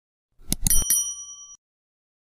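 Subscribe-button animation sound effect: three quick clicks about half a second in, then a short, bright bell ding that rings out and stops in under a second.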